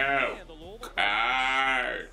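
A man's drawn-out vocal call without words: a short one at the start, then a long held one from about a second in.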